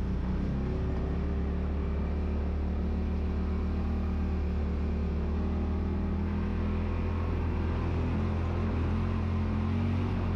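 Side-by-side UTV engine running in a steady low drone at slow trail speed, with faint rattle from the rocky track.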